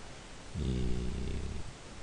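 A man's voice holding one long, level "eee" for about a second, a drawn-out hesitation sound in speech.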